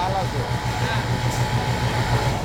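Pegasus industrial coverstitch sewing machine running steadily as it top-stitches a T-shirt armhole: a low hum with a fast, even pulse.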